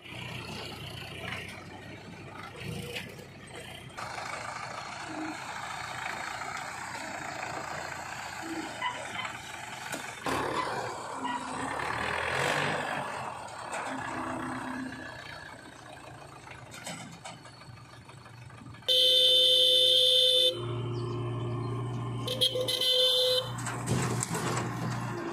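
Diesel tractor engine running as it works through mud. Near the end a vehicle horn blares loudly for about a second and a half, then gives a shorter second blast.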